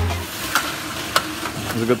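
Electronic background music stops just after the start, leaving a steady hiss of metalworking shop noise broken by two sharp metallic clicks; a man starts speaking near the end.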